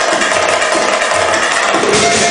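Live band playing belly-dance music on keyboard, violin and drums, with a held melody note over recurring drum beats.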